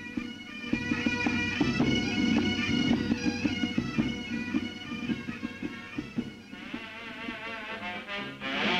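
Pipe band playing: bagpipes sound a tune over their steady drones, with drum beats through the first few seconds.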